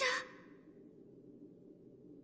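A woman's anguished call trails off just after the start, then near silence with only a faint steady hum.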